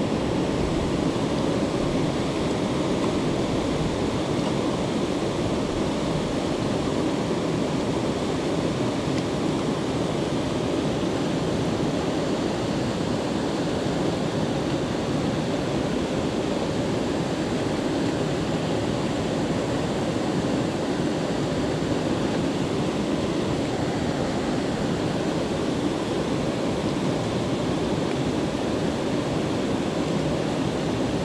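Steady rush of whitewater pouring over rocks from a spillway into a creek pool, an unbroken, even roar of moving water.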